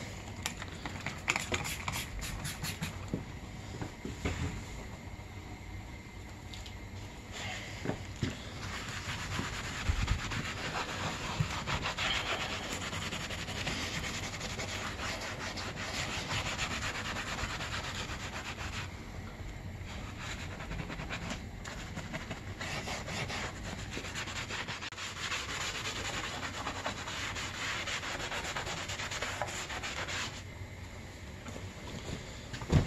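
Small hand scrub brush scrubbing a snowmobile seat cover lathered with degreaser foam: a steady, rapid scratchy rubbing of bristles on the wet seat cover.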